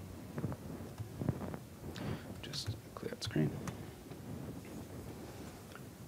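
Quiet room tone with faint, murmured speech and a few small scattered sounds.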